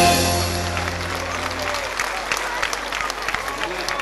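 A rebetiko band's closing chord on bouzoukis and guitars rings out and fades over the first two seconds. Audience applause breaks in and carries on.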